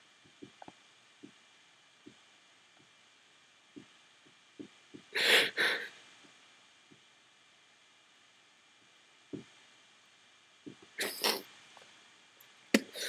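Faint steady hiss with a few tiny clicks, broken by two short breathy exhalations or sniffs from a person close to the microphone, about five seconds in and again near the end.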